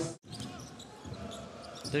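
Basketball game court sound: a basketball bouncing on the hardwood floor over a fairly quiet crowd murmur in a large arena, after a brief cut to silence just after the start.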